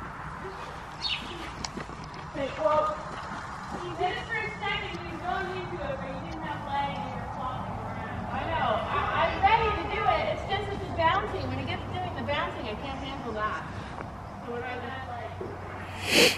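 Indistinct talking by several people, not clear enough to make out words, with a few short sharp noises in the first three seconds.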